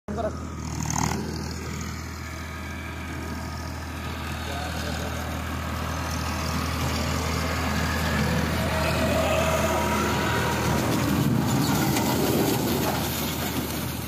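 Farmtrac tractor's diesel engine running steadily under load while its rear implement works through rice straw. The sound grows louder through the first half and then holds steady.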